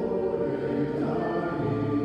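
Mixed choir of men's and women's voices singing held chords, moving to new chords about a second in and again about halfway through.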